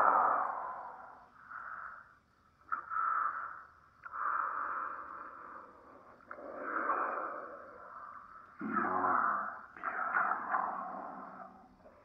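A person breathing heavily: a run of long breathy swells, each about a second, rising and fading with short pauses between them.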